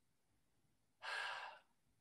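A man's single sigh, an audible breath of about half a second coming about a second in, while he thinks over a question. The rest is near silence.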